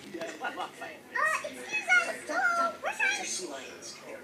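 A child's high-pitched voice speaking and vocalising in play, louder from about a second in.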